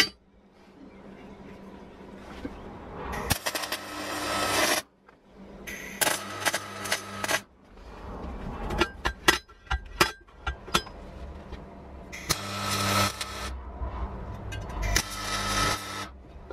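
MIG welder tack-welding a steel hinge onto a steel box section, in four crackling, hissing bursts of about a second each. Sharp metallic clicks and taps come between the second and third bursts as the metal is handled.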